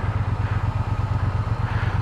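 Triumph Bonneville parallel-twin engine idling, a steady low beat with fast, even pulses.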